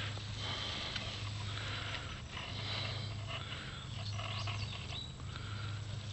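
Ground cherry leaves and stems rustling as a hand moves through the plants, with faint irregular taps and scrapes over a steady low hum.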